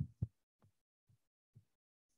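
Mostly quiet, with a few soft low thumps: two close together at the start, then three much fainter ones about every half second.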